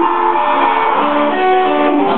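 A live band's amplified electric guitars playing held notes and chords that change about halfway through.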